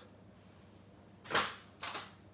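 Two short crinkles of a paper bag being picked up, half a second apart, in an otherwise quiet kitchen.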